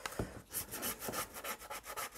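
Paper-covered cardboard rubbing and rustling in the hands as the glued band is pressed and turned. There are many short scrapes of paper on paper, and a soft knock just after the start.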